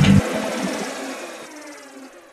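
A rock band's music stops abruptly a moment in, leaving a ringing tail of cymbals and sustained tones that fades away steadily.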